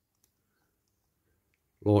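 A few faint, light clicks of a small plastic windscreen being handled and fitted into a diecast model car body, otherwise near quiet.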